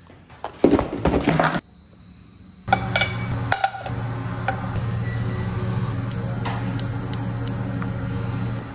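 Rustling and clatter about a second in. Then, from about three seconds, a steady low hum from a commercial kitchen's extractor hood, with light clicks and clinks as frozen dumplings are set into a non-stick frying pan on a gas hob.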